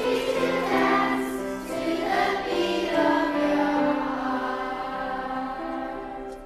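Children's choir singing together in a church, many young voices on sustained notes, the singing dying down toward the end of the song.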